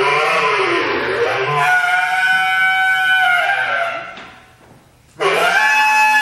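Bass clarinet playing free jazz: wavering, bending notes that settle into a held high note, which fades away about four seconds in. After a short gap the horn comes back in suddenly with a rising glide into another held note.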